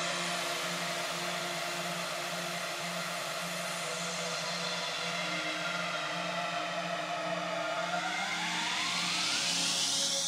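Liquid drum and bass breakdown: a steady wash of synth noise over a low note pulsing in an even rhythm, with a sweep rising in pitch through the last two seconds as the build-up before the drop.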